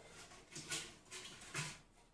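Cabbage leaves tipped from a glass bowl into a food processor's stainless steel mixing bowl: a few faint, short rustles and soft knocks.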